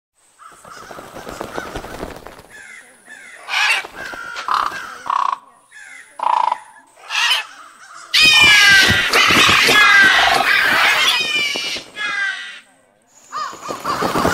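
Sound effect of crows cawing: scattered caws at first, then from about eight seconds in a whole flock cawing at once, loud and dense.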